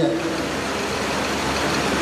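A steady rushing noise, even from low to high pitches, with no tone or rhythm in it, filling a short pause between a man's sentences.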